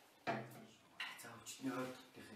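Men talking in Mongolian dialogue, with a short knock near the start.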